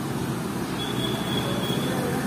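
Steady background din, a dense low rumble and murmur like traffic or a busy eatery, with a thin high tone that sounds for about a second near the middle.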